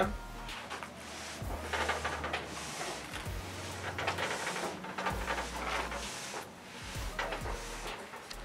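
A free-standing Genmega ATM being shifted across a rug-covered floor by hand: several stretches of scraping as its base drags, with a few dull thumps as it is rocked and set down.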